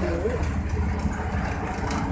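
Steady low rumble of a vehicle's engine and tyres on a highway, heard from inside the cabin.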